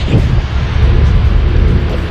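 Low, steady outdoor rumble of a truck stop, with a hiss above it, cutting in suddenly as music stops.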